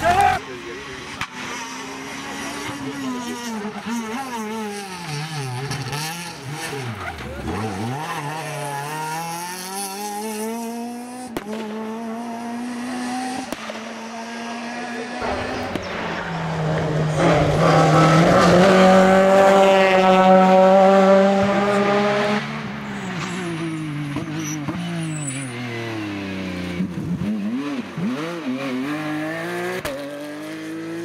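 Rally car engines revving up and falling back through gear changes as the cars drive past, the engine note rising and dropping over and over. The loudest pass comes about two-thirds of the way in, with the engine held at high revs for several seconds.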